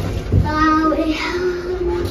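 A small child's voice singing held notes: a short wavering note about half a second in, then a longer, higher steady note from just past the middle.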